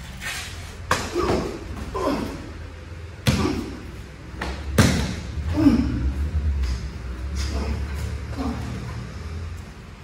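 Thuds and slaps of bodies and bare feet on training mats during a close-range karate self-defence drill. There are three sharp impacts, about a second, three seconds and five seconds in, the last the loudest, with short grunts and breaths between them.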